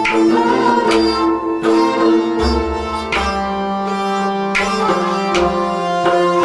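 Instrumental passage of Kashmiri Sufi kalaam music with no singing: a melody in sustained notes that step from pitch to pitch, over struck strings and drum strokes.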